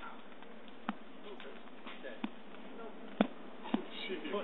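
A golf putter striking a ball on grass: a sharp click about three seconds in, with a few fainter clicks earlier, over a steady outdoor hiss and faint voices.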